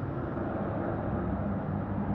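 Steady outdoor field-recording noise from protest footage, a low rumble with hiss and no distinct events. It sounds muffled, with the top end cut off as through a video call's screen share.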